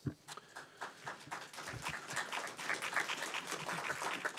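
Audience applauding: a dense patter of many hands clapping that builds up over the few seconds. A single knock, like the microphone being bumped, comes right at the start.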